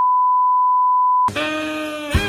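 TV colour-bars test tone: a single steady pure beep that cuts off abruptly after about a second and a quarter. Music then comes in with a held note.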